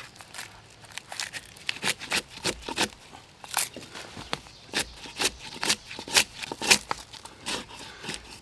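Hand-forged barking spud dug under the bark of a long-downed log and prying it off: a run of irregular, crisp scraping and cracking strokes as the blade bites in and bark tears loose. The bark is tough to get under because the timber has sat out for a while.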